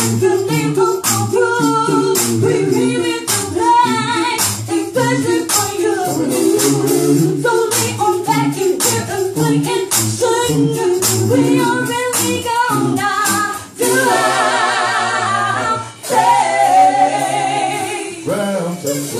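Live funk band playing: voices singing over bass and drums, with a tambourine keeping an even beat. About four seconds before the end the beat drops out and two long, wavering held notes follow, each after a brief dip in level.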